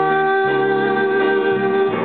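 Keyboard accompaniment to a live solo ballad, holding sustained chords, with the bass note changing about halfway through and a long held note above it that ends near the end.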